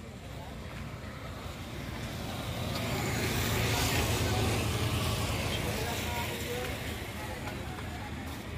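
A motor vehicle passing on a nearby road: a broad engine-and-tyre noise that builds to its loudest about four seconds in, then fades away.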